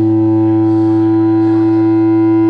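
A single held electric-guitar tone sustained through the amplifier, steady and loud, neither fading nor changing pitch.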